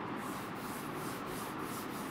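A hand rubbing on a chalkboard in quick back-and-forth strokes, about three a second, each a short scratchy swish.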